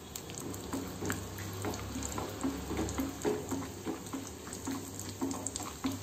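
Cashew nuts and other dry fruits frying in hot ghee in an iron kadai: the ghee bubbles and crackles with many small pops.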